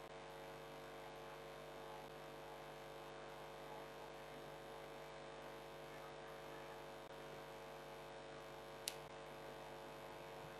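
Faint steady electrical hum, a low buzz with many even overtones, over quiet room tone; one short click about nine seconds in.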